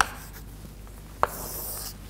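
Chalk writing on a chalkboard: a sharp tap of the chalk on the board a little over a second in, then a short, high scratchy stroke near the end.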